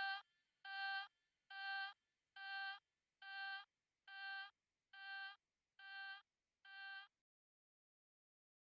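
Electronic track's outro: a single bright synth note repeating about once a second, nine times, each a little quieter than the last, stopping about seven seconds in.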